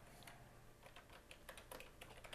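Faint computer keyboard typing: a quick, uneven run of keystrokes as a word is typed.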